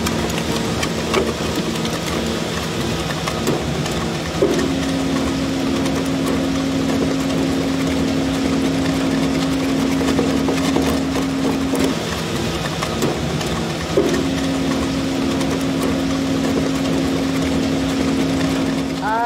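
Wood shredder running steadily, its bladed rotor grinding wood blocks into chips with a constant mechanical noise. A higher steady hum comes in about four seconds in, breaks off near twelve seconds and returns about two seconds later.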